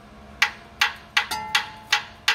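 A hammer tapping on the engine by the knock sensor of a GM 8.1-litre V8, making about half a dozen sharp, irregularly spaced metallic knocks. The strikes are there to make the piezoelectric knock sensor put out AC voltage for a multimeter test, and the sensor responds: it is working.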